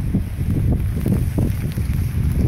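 Wind buffeting the microphone outdoors, a rough, uneven low rumble.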